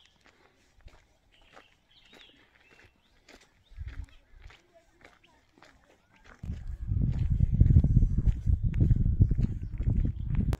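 Quiet footsteps and small clicks with a few faint high chirps. About six seconds in, a loud, low, gusty rumble on the phone's microphone takes over and lasts to the end.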